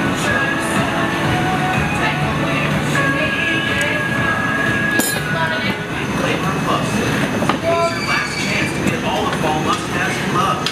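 Steady rushing of the gas burners in a glassblowing studio's furnace and glory hole, with scattered talk from onlookers.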